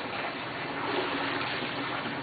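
Swimming pool water stirred by a hand dipped in to feel it, a steady watery swishing.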